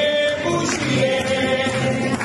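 Music with singing, voices holding long sustained notes over an accompaniment.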